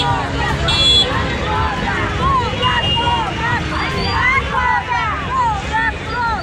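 A crowd of protesters shouting over one another, many overlapping voices with no single speaker standing out, over a steady low rumble.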